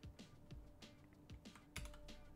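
Faint computer keyboard keystrokes, about five separate clicks spaced a few tenths of a second apart, as a file is saved in a terminal text editor.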